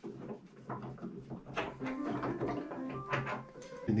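Wooden clicks, knocks and sliding as a grand piano's key frame and action are worked loose and slid out of the case. A few brief faint tones come around the middle.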